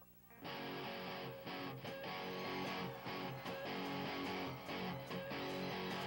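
Amplified electric guitar playing the opening of a rock song live, coming in with strummed chords about half a second in after a brief hush.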